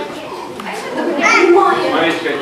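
Young children's voices in a classroom, several talking at once with higher calls rising over them about a second in.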